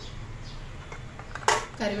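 A single sharp clack about one and a half seconds in, as a plastic bowl is picked up and knocks against the steel plate that the bowls stand on.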